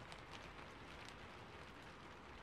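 Faint steady hiss with a few soft crackles in the first second.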